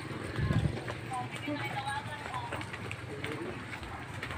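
Footsteps of several people walking on a concrete road, with faint voices talking in snatches and a soft thump about half a second in.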